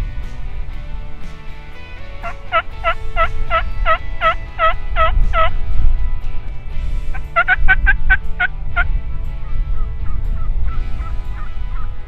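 Wild turkey hen yelping: a run of about a dozen evenly spaced yelps, then a shorter, quicker run of about eight a couple of seconds later. Softer, shorter notes follow near the end.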